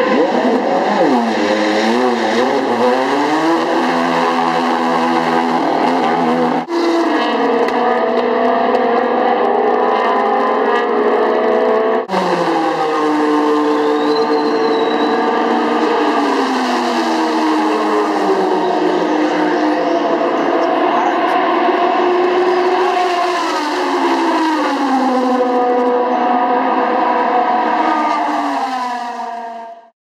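Lexus SC430 GT500 race car's V8 engine running and being revved, its pitch rising and falling with throttle blips, then holding and dropping back several times. The sound breaks off sharply twice and fades out near the end.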